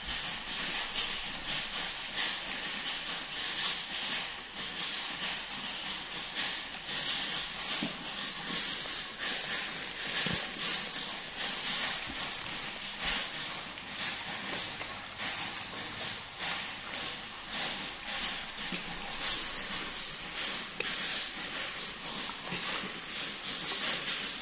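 A dog chewing and smacking as it eats fried rice off a banana leaf, heard close up as a steady run of small wet clicks and smacks.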